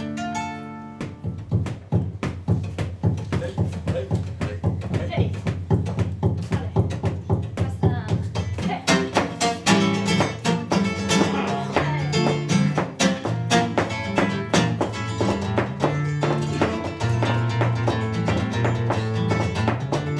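Nylon-string Spanish guitar playing an instrumental introduction in a flamenco tango style, with rhythmic strummed chords and a picked melody. The playing grows fuller about halfway through.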